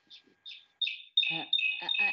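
A bird chirping: two short high chirps, then a falling note and sustained high whistled notes that carry on under a man's hesitant 'uh, uh'.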